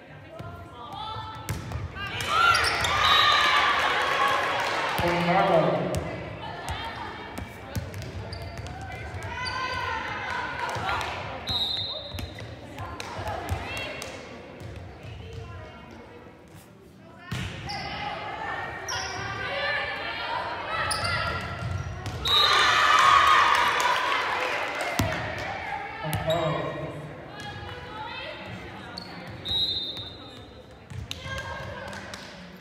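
Gym sounds of a volleyball rally: the ball being hit and bouncing, players calling out, and spectators shouting and cheering, which swell loudly twice, a couple of seconds in and again about two-thirds of the way through.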